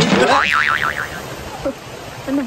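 Cartoon "boing" spring sound effect: a sudden hit, then a wobbling tone that swings up and down about six times a second and fades out within about a second.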